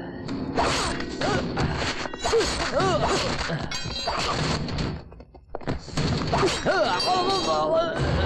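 Film fight-scene soundtrack: a rapid string of whacks and thuds from blows and blade strikes, with men's short yells, over the background score. The action drops out briefly about five seconds in, then resumes.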